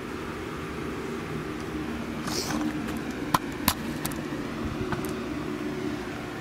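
A steady low mechanical hum, with a brief rustle about two seconds in and a few sharp clicks about a second later.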